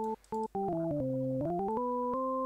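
FL Studio's 3xOsc synthesizer on its default patch, played note by note from the on-screen keyboard: a plain, organ-like tone. After two short breaks about half a second in, the notes step down in pitch, hold, then climb back up and hold a higher note.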